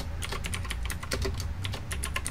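Typing on a computer keyboard: a quick, uneven run of key clicks as a short name is typed.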